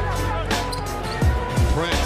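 Hip-hop backing track with deep bass hits that slide down in pitch, three times, over the broadcast sound of a basketball game.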